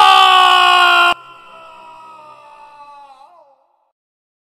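A loud crying wail, its pitch sagging slightly, that cuts off sharply about a second in. A quieter, lower trailing wail follows, wavering near the end and fading out by about three and a half seconds.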